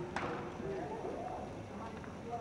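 Horse trotting, its hooves beating on the arena footing, with a person's voice talking over it.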